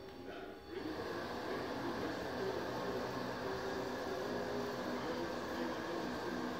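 Moving-target carriage of a 10 m running-target track travelling along its rail. A steady mechanical running sound starts about a second in and holds even.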